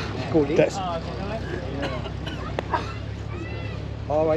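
Voices of people talking nearby over a steady low hum, with a single sharp click a little past halfway.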